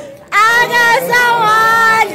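People singing a chant, with one high voice rising into a long held note about a third of a second in, after a short break at the start.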